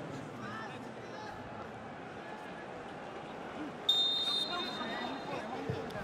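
A referee's whistle blown once, a short, steady, high blast about four seconds in, as a set piece is about to be taken. Around it, faint shouts of players carry across an empty stadium with no crowd noise.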